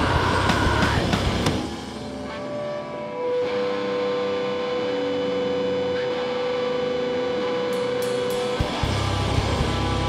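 Live rock band with electric guitars, bass guitar and drums playing loud, then dropping out about a second and a half in to ringing, held guitar notes with one long sustained tone, before the whole band comes back in near the end.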